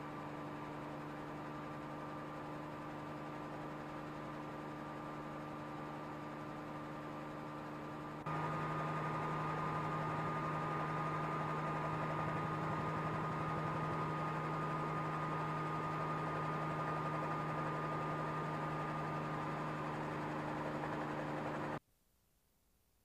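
Steady engine and rotor drone from a helicopter cabin, with a steady whine over it. It steps louder about eight seconds in at a cut between shots and stops abruptly near the end.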